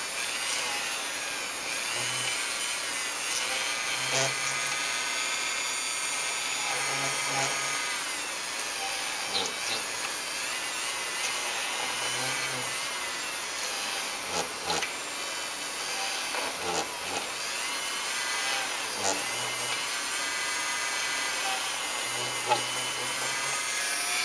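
Handheld rotary tool running at reduced speed with a small bit, drilling a series of small round window holes through a photo-etched metal template into a plastic model hull. Its steady whine sags in pitch and recovers several times as the bit bites into the plastic, with small clicks and knocks between holes.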